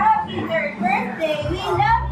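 A young child's high voice talking and exclaiming, over background music with a steady low bass line that comes back near the end.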